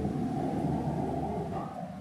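Low rumble of passing motor traffic, slowly fading toward the end.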